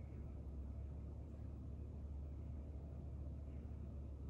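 Quiet room tone: a steady low hum, with no distinct sound events.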